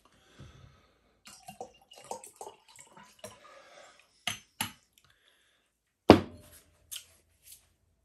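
Liquid poured from a glass bottle into a glass jar, trickling and splashing with small clinks of glass, then two sharp clinks. About six seconds in comes a loud knock as the glass bottle is set down on the table, followed by a few lighter taps.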